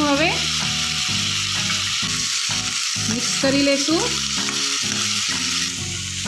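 Chopped tomatoes and onions sizzling steadily in hot oil and ghee in a non-stick kadai as they are stirred, with background music playing underneath.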